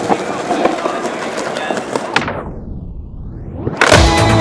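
Onlookers chattering with skateboard wheels rolling and clicking on stone paving. About two seconds in the sound goes muffled, its treble fading out and sweeping back in, and music starts near the end.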